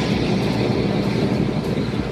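Steady rushing, rubbing noise, heavy in the low end, as a long synthetic wig is pulled on over the head.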